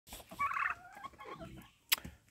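A white domestic turkey gobbles, a quick rattling burst about half a second in, followed by softer calls from the turkeys and chickens. A sharp click sounds near the end.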